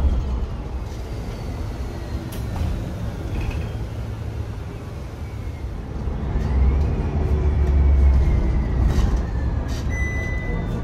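Bus with a Voith DIWA automatic gearbox heard from inside the cabin, its thin gearbox whistle sliding in pitch over the engine and road rumble as the bus brakes. A second whistle rises and then slowly falls starting about six and a half seconds in, while the rumble grows louder.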